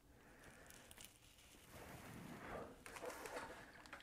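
Near silence with faint rustling and soft handling noises from a T-shirt sleeve and iron-on hem tape being placed on an ironing board, a little louder in the second half.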